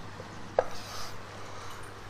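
Room tone with a steady low hum and one short, sharp tap about half a second in, followed by a brief faint hiss.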